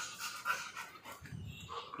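Black Labrador panting quietly in short, uneven breaths.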